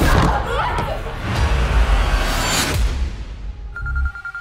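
Horror trailer score: loud, dense music with deep booming hits and whooshes under fast-cut violence, dying away about three seconds in.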